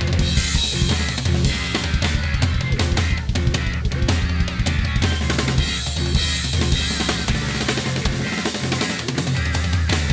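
Progressive rock band recording with the drum kit to the fore: busy drum fills and unison accents with cymbal crashes, over bass and guitar.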